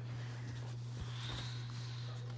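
Quiet room with a steady low hum, a faint click about a second in, and a faint high tone just after it.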